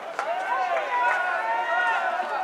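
Many voices shouting and calling over one another at a baseball ground, with a few brief sharp clicks.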